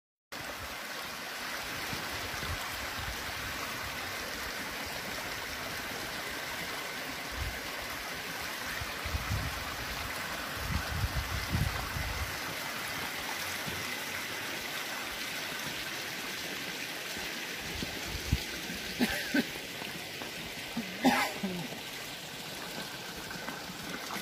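Hot-spring water running and trickling over rocks in a shallow channel, a steady watery rush. A few short sharp sounds come near the end.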